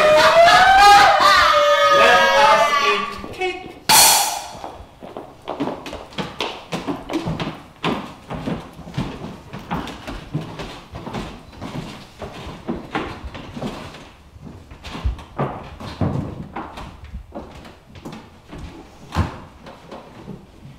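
Several voices wailing and crying out together, then a sharp burst of noise about four seconds in. After that come scattered light knocks, taps and thuds on a stage floor.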